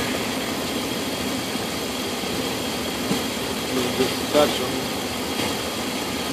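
A 2000 Dodge Ram 1500 pickup's engine idling steadily with the hood open, its alternator charging the battery at about 15 volts.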